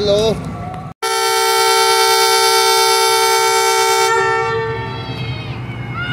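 Pakistan Railways GE U20 diesel locomotive's air horn sounding one long, steady blast of several notes at once, starting about a second in and fading out over the last two seconds. It is the signal that the train is about to depart.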